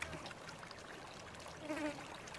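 Faint insect buzzing with scattered small clicks of eating, and a short louder buzz near the end.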